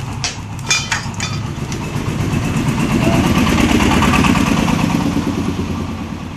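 A motor vehicle engine, most like a motorcycle, running close by. It grows louder towards the middle and then fades, as if passing, with a few clicks near the start.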